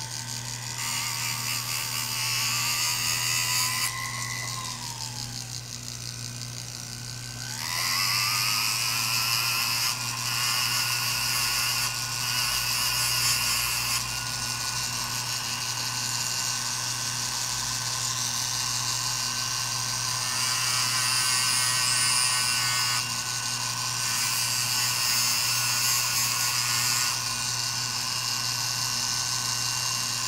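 Small jeweller's rotary grinding tool running with a steady high whine and a low hum under it. About five seconds in its pitch sinks as the motor slows, then it spins back up just before eight seconds and runs on steadily.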